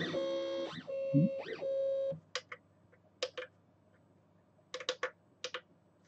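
Stepper motors of a Monoprice MP Mini Delta 3D printer whining for about two seconds as the carriages move, holding one pitch with brief swoops down and back up as they slow and speed up. Then a few sharp clicks.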